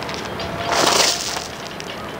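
A thrown rock splashing into the river near a log: one short splash about a second in.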